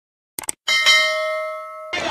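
Subscribe-button animation sound effect: a quick double mouse click, then a notification-bell chime that rings on in several steady tones, fades, and cuts off just before the end.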